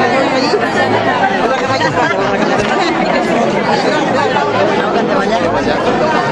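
Crowd chatter: many people talking at once close by, a steady babble of overlapping voices with no single speaker standing out.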